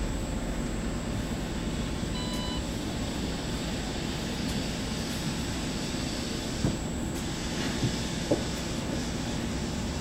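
A MAN Lion's City CNG bus's natural-gas engine idling while the bus stands still, a steady low drone heard from inside the driver's cab. A short electronic beep sounds about two seconds in, and a few light knocks come near the end.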